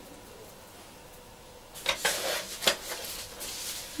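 Light plastic knocks and rustling as a white plastic soil scoop is set down on the table and a plastic container of seedlings is handled: quiet at first, then a few sharp clicks about two seconds in, with handling rustle after.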